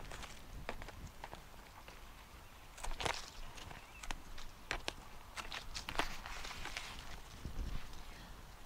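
Hand pruning shears snipping through hellebore leaf stems: a string of irregular sharp snips, several seconds apart at first and closer together later, with leaves rustling between them.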